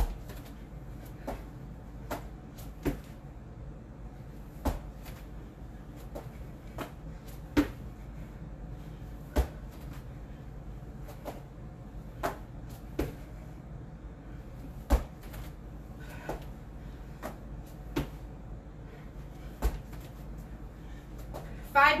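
Burpees on an exercise mat over carpet: a sharp thud every second or two at uneven spacing as feet and hands land, over a low steady hum.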